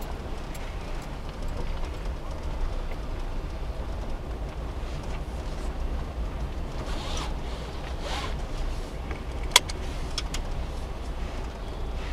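Suzuki Every kei van driving slowly along a dirt campsite track, heard from inside the cabin: a steady low engine and road rumble. Two brief rustling swells come a little past halfway, followed by a single sharp click, the loudest sound.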